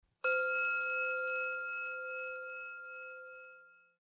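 A meditation bell struck once, a quarter second in, ringing with a clear, steady tone and overtones that fade away over about three and a half seconds. It marks the close of the meditation.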